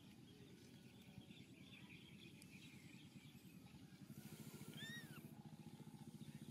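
Near-silent outdoor background with a faint low pulsing hum, and about four and a half seconds in one short high call that rises and falls, from an animal.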